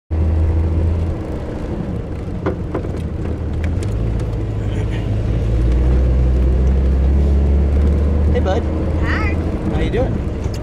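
A vehicle's engine and tyre drone heard from inside the cabin while driving slowly over a rough dirt trail. The low hum grows louder about four seconds in and eases off near the end.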